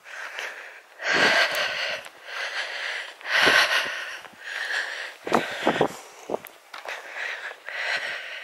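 A person breathing audibly close to the microphone, a series of breaths every second or two, with a few soft low thumps around the middle.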